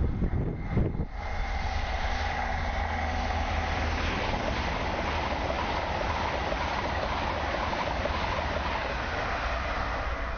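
LNER Azuma high-speed train passing at speed on four-track main line: a steady rush of wheels on rail and air noise, with a deep rumble underneath.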